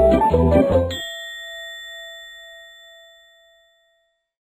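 Background music cuts off about a second in, and a single bell-like cartoon "ding" sound effect rings out and fades away over about three seconds.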